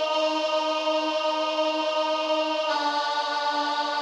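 A single alto voice holds a long sung note on the syllable "Co-" in E-flat. About two and a half seconds in, it steps down a half step to D.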